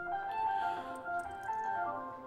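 Soft live keyboard music: sustained pad tones with a slow melody of changing notes, played quietly under a spoken interlude.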